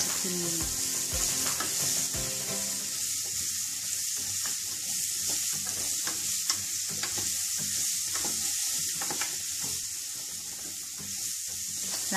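Diced pumpkin sizzling in hot oil in a stainless steel pot, stirred with a wooden spoon that scrapes and knocks against the pot in short, irregular strokes over a steady frying hiss.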